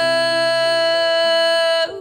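A woman's sung note, held long and steady with a slight vibrato, that stops abruptly near the end. Soft accompaniment chords change underneath it.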